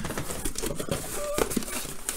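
Cardboard box flaps being pulled open and the plastic packing material inside (foam sheets and bubble wrap) rustling and crinkling under the hands, an irregular run of small crackles.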